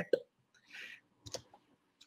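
A short pause in speech: the tail of a word, a faint hiss, then two quick small clicks just past halfway.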